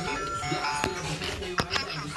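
Toy subway train's electronic sound module playing a chime of steady electronic tones, set off by opening the toy car's door.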